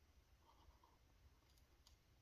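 Near silence: a pen writing on notebook paper, with a few faint soft ticks and two small sharp clicks near the end as the tip touches and leaves the page.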